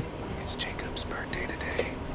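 Quiet, indistinct speech with short hissy s-sounds.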